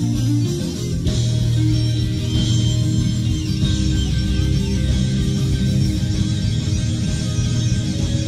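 Live rock band in an instrumental jam: electric guitar over bass, with steady sustained low bass notes.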